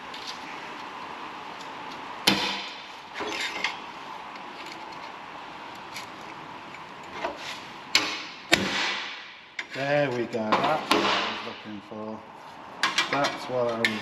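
Hammer blows on a cold chisel driving a crease into a steel repair-panel strip clamped to a metal bench. The blows are irregular, sharp metallic strikes with a short ring after each: single blows about 2 s and 8 s in, and a quick cluster near the end.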